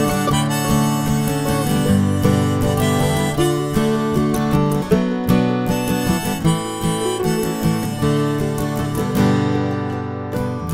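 Live instrumental break: a harmonica plays a melody of held, bending notes over strummed acoustic guitar and electronic keyboard.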